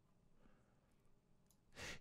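Near silence, with a short intake of breath near the end.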